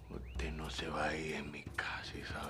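Whispered speech.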